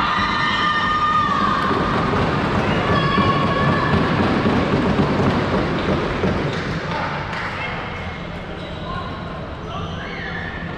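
Floorball game in a sports hall: players' shouts and calls echo over the thuds and clatter of sticks, ball and running feet. A held call rings out in the first second or so, and the noise eases over the last few seconds.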